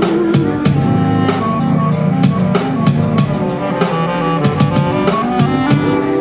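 Clarinet playing a melody that steps from note to note, over drums and percussion keeping a steady beat.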